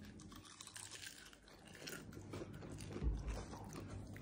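Faint biting and chewing of crispy mini corn dogs with a pickle-battered crust, with small irregular crunches.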